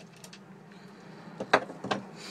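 Two sharp metal clanks, about half a second apart near the end, as a steel valve spring compressor is handled against the engine, over a steady low hum.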